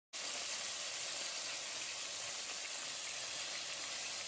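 Flour-coated chicken pieces deep-frying in hot oil, a steady sizzle.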